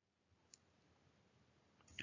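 Near silence: faint room tone with two faint clicks, one about half a second in and a slightly louder one at the very end, as a computer mouse is clicked to advance a slide.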